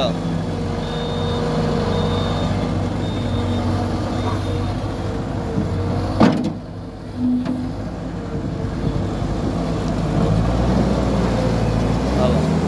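Volvo MC skid-steer loader's diesel engine running steadily as the loader is driven into a pile of dirt to test whether its drive locks under strain. There is a sharp click about halfway through, and the engine gets louder near the end as it takes load.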